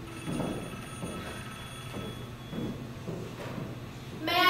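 A telephone ringing: a steady high electronic tone lasting about two and a half seconds, then stopping, with a few soft thumps underneath.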